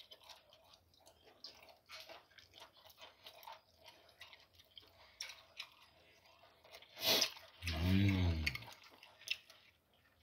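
Close-up chewing and biting of meat off the bone, a run of small wet clicks and smacks. About seven seconds in there is a loud smack, then a short hummed vocal sound that rises and falls in pitch.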